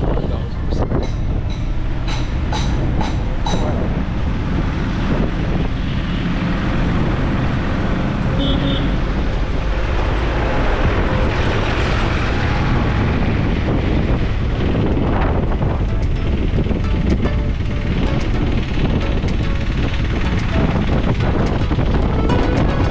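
Wind buffeting a camera microphone held out of a moving car's window, over steady engine and road noise.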